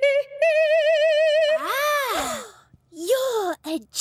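A cartoon character's voice singing playfully: a long held note with a wobble in the pitch, then a swoop up and back down, then a few short sung notes near the end.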